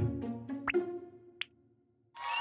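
Quiz sound effects: a short burst of plucked musical notes, then two quick pops, the first sweeping up in pitch and the second shorter and higher, as the answer circles are marked on the pictures.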